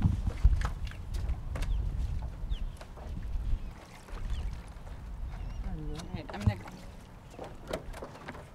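Stand-up paddle board being launched off a wooden dock: knocks and scuffs of the board and paddle over a low rumble, louder in the first half. A short muffled voice is heard about six seconds in.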